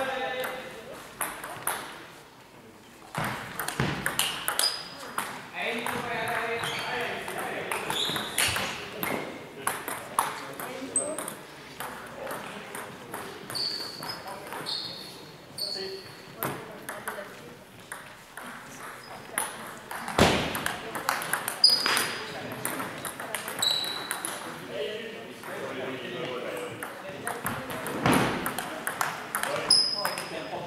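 Table tennis balls clicking and pinging off tables and bats at scattered moments, over background voices that ring in a large hall.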